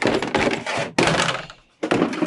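Hard drum cases being handled: a run of thunks and scrapes as the round case and its lids are moved and set on the floor, in three loud bursts.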